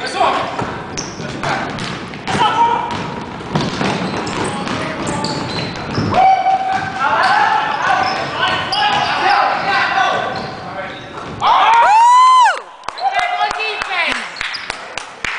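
Basketball bouncing on a gym's hardwood court during play, with players' voices calling out in the large hall. About twelve seconds in, a loud high sound rises and falls in pitch over about a second.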